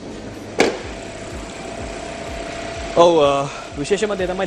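A single sharp click about half a second in as a car bonnet's latch releases and the bonnet is lifted, followed by a faint steady hum. A short burst of a man's voice comes near the end.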